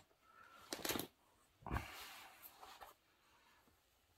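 Faint rustling and handling noise as yarn is pulled loose from the yarn cake and the crochet work is picked up: two short scuffling bursts in the first three seconds.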